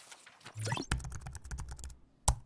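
Keyboard typing sound effect: a quick run of sharp keystroke clicks, starting about a second in, as text is typed into an on-screen search bar. Just before the clicks there is a short rising swoosh over a low hum.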